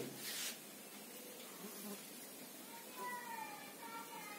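Faint room tone with a faint, drawn-out high call from about three seconds in, falling slightly in pitch, like a distant animal's cry.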